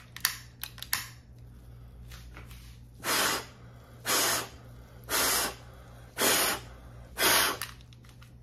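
Five hard breaths blown out through a KF94 face mask at a lighter flame, each a short rush of air about a second apart, a test of how much air passes through the mask. A few light clicks come near the start.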